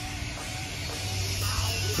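Background music playing at a moderate level.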